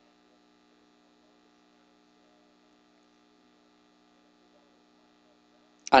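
Faint steady electrical hum, a set of even, unchanging tones with no other events. A man's voice starts again at the very end.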